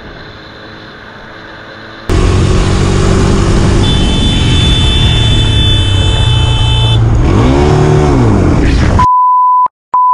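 Helmet-camera ride: a quieter stretch of motorcycle wind and road noise, then, after a sudden cut, a quad bike's engine running loud with road noise. A high steady tone sounds for about three seconds, and the engine revs up and back down. Near the end a censor bleep replaces the sound.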